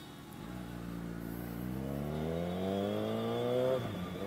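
Kawasaki motorcycle engine accelerating, its pitch climbing steadily for about three seconds, then dropping suddenly near the end as it shifts up a gear.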